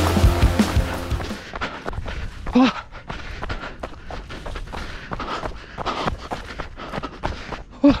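A trail runner's footsteps on a gravel and dirt path, a quick run of short knocks, with a short vocal sound about two and a half seconds in and an 'Oh!' at the end. Music with a heavy beat fades out in the first second.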